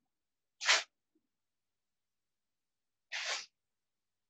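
Two short sniffs, about two and a half seconds apart, the first louder than the second.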